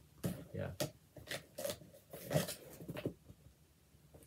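Cardboard shipping box being handled and opened: a string of short, irregular rustles and scrapes of cardboard, thinning out near the end.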